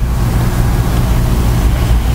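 A loud, steady low rumble that begins abruptly and holds even throughout.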